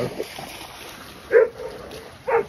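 A dog barks once, a single sharp bark about a second and a half in, with a short drawn-out tail, as dogs play together.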